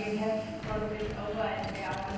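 A person's voice speaking at a moderate level, too indistinct to make out words.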